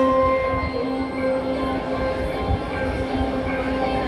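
Electric guitar through an amplifier holding long sustained notes, drone-like, over a low rumble, with no clear drum strokes.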